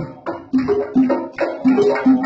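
Traditional Sundanese karinding ensemble music, led by a struck bamboo tube zither (celempung). It plays a brisk rhythm of pitched, drum-like thuds, roughly two to three a second.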